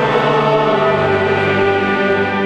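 Church choir singing long, sustained chords during the Mass, with the low part moving to a new note under a second in.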